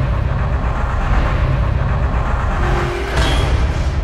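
Logo-intro sound effect: a loud, dense rumble with heavy deep bass, swelling brighter about three seconds in.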